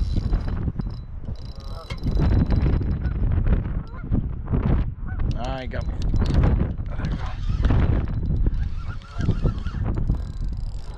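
Geese honking, one call standing out about halfway through, over a steady low rumble.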